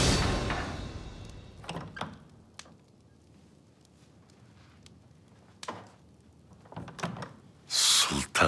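Soundtrack music fading out over the first second, leaving a quiet room with a few soft knocks and clicks, then a sudden louder sound of a door opening near the end.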